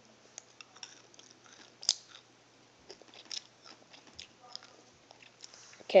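Person chewing and crunching sugar-shelled Smarties chocolate candies close to the microphone: a scattering of short, sharp crunches, the sharpest about two seconds in.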